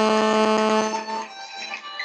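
A steady buzzing electronic tone, rich in overtones. It weakens about a second in and cuts off abruptly at the end.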